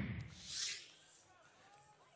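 Sound effect of cartoon airships lifting off: a hissing rush that fades, swells again in a second whoosh about half a second in, then dies away to a faint hiss.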